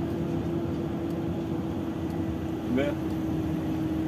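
Truck engine running at low speed, heard from inside the cab as a steady low drone with a steady hum over it.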